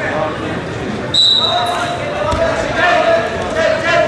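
Referee's whistle: one short, high-pitched blast about a second in, restarting the bout. Voices shout over the hall's background noise before and after it.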